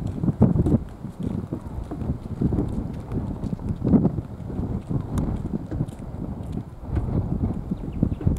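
Wind buffeting the camera microphone: an uneven low rumble with irregular soft thuds.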